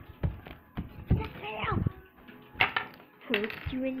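Repeated knocks and clatter of toys and a camera being handled on a wooden table, with a child's voice making a gliding, wordless sound about a second and a half in.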